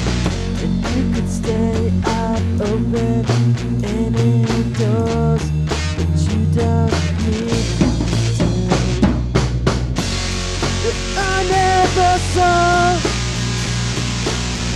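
A rock band plays: electric guitar, bass guitar and drum kit, with a bending melody line over them. About ten seconds in, the top end fills with a steady cymbal wash.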